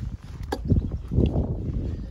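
Movement and handling noise as a person shifts and crouches on bark-chip mulch while carrying a handheld phone camera. A sharp click comes about half a second in, then a second or so of rustling and rumbling.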